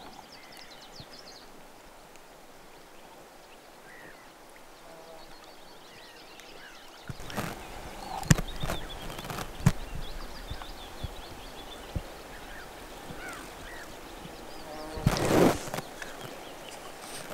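Quiet pond-side outdoor ambience with faint, scattered bird chirps. From about halfway through, the background grows louder, with a few sharp clicks and a louder, longer sound shortly before the end.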